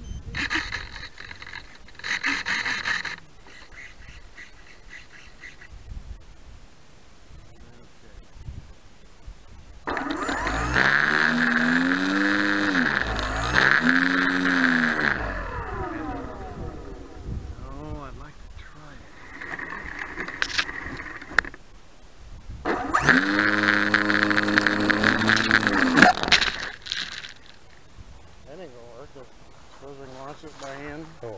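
Model aircraft motor and propeller run up on the ground in throttle blips: two quick rises and falls in pitch, a weaker burst, then a few seconds at steady throttle before cutting back. A brief rustle comes near the start.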